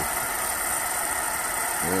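Propane torch burning steadily inside a homemade oxalic acid vaporizer, a continuous even rush of noise. The reservoir it heats holds only water for a test run, boiling off.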